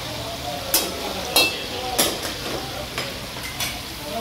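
Chicken pieces and whole tomatoes sizzling in hot oil in a steel karahi, with a metal ladle stirring and knocking against the pan in about five sharp, ringing clinks.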